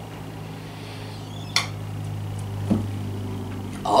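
A steady low hum, with a single short click about one and a half seconds in.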